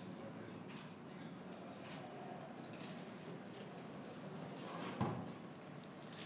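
Faint room noise with a few soft clicks and one dull knock about five seconds in.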